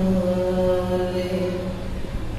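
A man chanting, holding one long steady note that fades away near the end.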